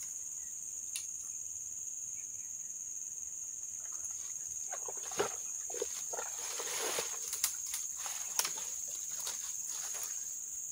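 Steady, high-pitched drone of insects in tropical forest. From about halfway, leaves and branches rustle and a few sharp snaps and clicks sound as someone pushes through the undergrowth.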